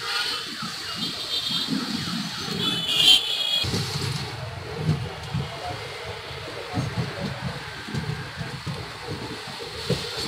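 Running noise of a train coach moving slowly along the rails: an uneven low rumble from the wheels and coach. A brief high squeal about three seconds in is the loudest moment.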